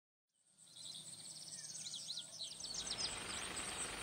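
Faint outdoor ambience fading in from silence, with small birds chirping in quick series for the first couple of seconds, over a soft background hiss that slowly swells.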